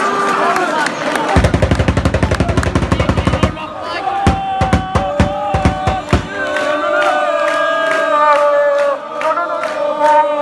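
Football crowd clapping and chanting in a stand: a fast run of claps about a second in, then a few loud single claps, then many voices singing a chant together.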